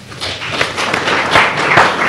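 Audience applauding, many hands clapping densely, building up over the first half second.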